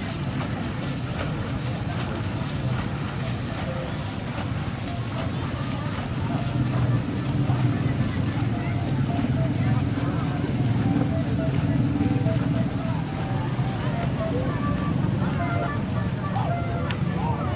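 Wind rumbling on the microphone over distant voices along a river; the rumble grows heavier from about six seconds in until about thirteen.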